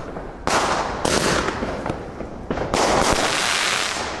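Aerial fireworks going off overhead: a sudden bang about half a second in, then dense crackling, and another sharp burst a little before the end.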